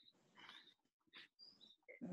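Near silence: room tone with a few faint, brief sounds.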